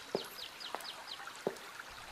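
A small bird trilling, a quick run of short falling chirps that stops about a second in, over a soft running-water hiss, with a few faint ticks.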